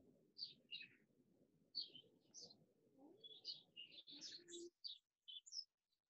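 Faint birdsong: many short, high chirps from small birds, scattered throughout, over a faint low background noise that cuts out about three-quarters of the way through.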